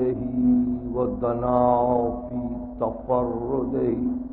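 A man's voice chanting in long, gliding melodic phrases, with a steady low hum beneath it, on an old tape recording.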